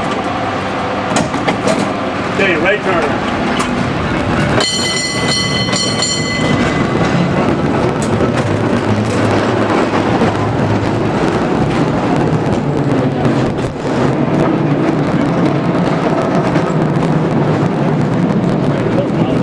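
San Francisco cable car running along its rails, a steady noisy rumble with many small clicks and knocks. About four and a half seconds in, a high-pitched metallic squeal sounds for about two seconds and stops.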